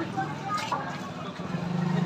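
Voices of people on a busy street, with a steady low vehicle engine hum that grows louder in the last half second.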